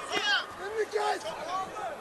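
Speech: men's voices calling out in short, broken phrases over a steady background of hall noise.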